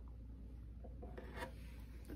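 Quiet room tone with a steady low hum and faint rubbing handling noise, like a hand or sleeve shifting against the guitar she is holding.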